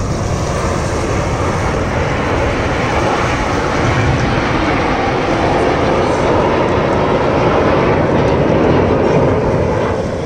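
Jet engines of the Red Arrows' BAE Hawk formation passing overhead, a steady roar that builds gradually to its loudest about nine seconds in and then falls away.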